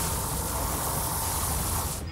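Animated sound effect of a huge hovering warship and rising missiles: a steady low rumble under a loud, even hiss.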